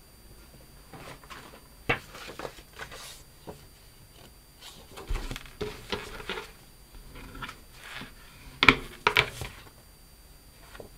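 Cardstock album pages being handled and laid on a cutting mat: scattered paper rustles and light taps, the loudest two close together near the end.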